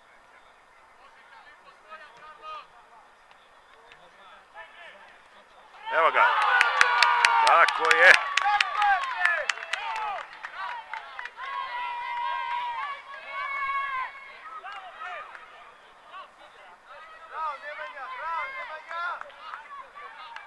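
Players and onlookers suddenly shouting and cheering, with sharp claps, about six seconds in: a goal celebration. Scattered shouts and calls, some held, follow.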